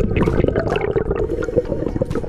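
Water rushing and bubbling around an underwater camera, a dense gurgling crackle, in a fast river current.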